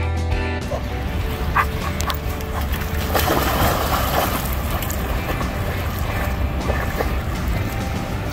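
Background guitar music that stops about half a second in, then a dog splashing as it bounds into a river, loudest about three to four seconds in, over a steady low rumble.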